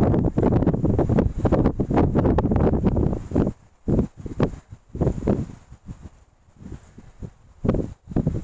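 Wind buffeting the camera's microphone: a heavy, continuous rumble for the first three and a half seconds, then breaking into separate gusts that grow weaker toward the end.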